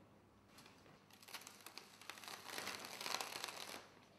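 A paper pattern sheet peeled away from adhesive masking film on a glass pane, making a dense run of small crackles that grows louder and stops just before the end.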